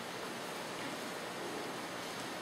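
Steady, even hiss of background noise (room tone and recording hiss), with no distinct sound standing out.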